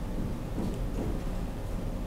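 Straight razor scraping through shaving foam and stubble on a scalp in a few short strokes, over a steady low rumble.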